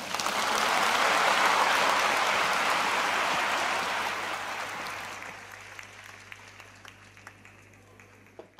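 Audience applauding, coming in at full strength at once and then dying away over the last few seconds to a few scattered claps.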